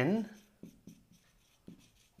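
Marker pen writing on a whiteboard: a series of short, faint strokes as letters are drawn.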